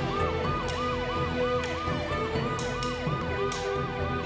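Police-style yelp siren rising and falling fast, about three times a second, mixed over theme music with held notes and sharp percussion hits.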